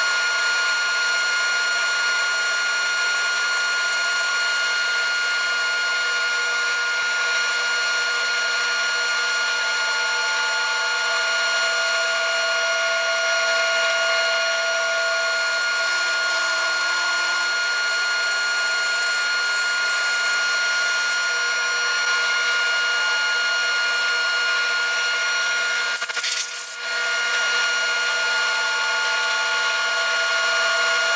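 Band saw running steadily, its blade cutting through a small firewood log to slice off thin discs, with a brief dip in the sound near the end.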